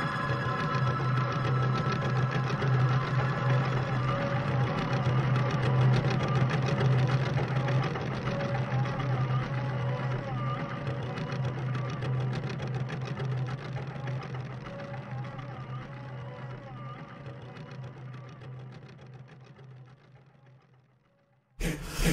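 A small early keyboard instrument playing rapid repeated notes over a steady low hum, gradually fading and dying away to silence near the end as the piece closes.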